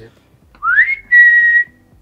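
A man whistling: a quick upward-sliding whistle about half a second in, then one steady held note.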